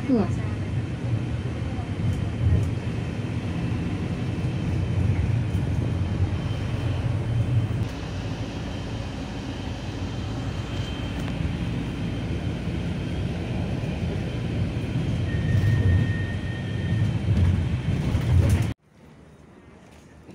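Steady low engine and road rumble heard inside a moving city bus. It cuts off suddenly near the end, leaving only a faint hum.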